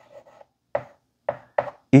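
Chalk writing on a blackboard: about five short, separate strokes and taps of the chalk as "x₁ =" is written.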